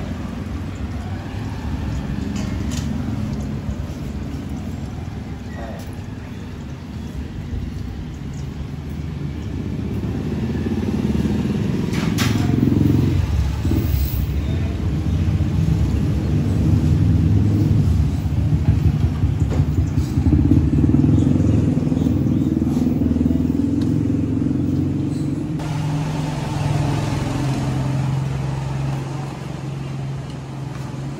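A motor vehicle engine running with a low, steady rumble. It grows louder about ten seconds in and eases off again in the last few seconds.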